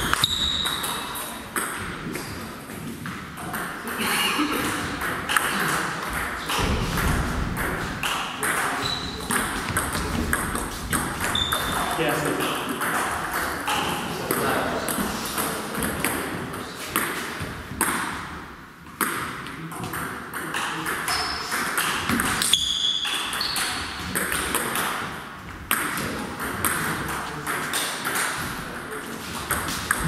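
Table tennis ball clicking sharply off the bats and the table during rallies, with short pauses between points. Indistinct voices of people talking carry on in the background.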